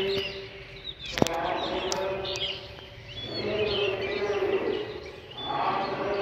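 Small birds chirping outdoors over a distant voice holding long, steady tones, which fades out twice. A sharp click sounds a little over a second in.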